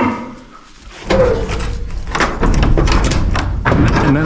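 Hinged wooden wall opener in a barn being opened by hand: a run of wooden knocks, thuds and clatter starting about a second in.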